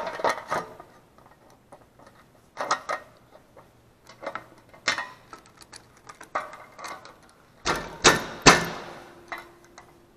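Irregular clicks, knocks and scrapes of small metal and plastic parts handled by hand as the oil fill tube is fitted and its bolt started on a Honda GXV160 engine. The loudest knocks come in a quick cluster about eight seconds in.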